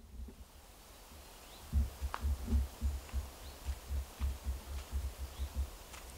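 Wind buffeting an outdoor camera microphone: an irregular low rumble with soft thumps that grows louder about two seconds in.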